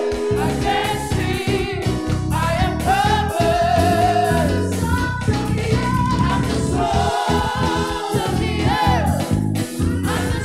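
Live gospel worship song: a group of singers on microphones, women and men, singing with vibrato over keyboard accompaniment.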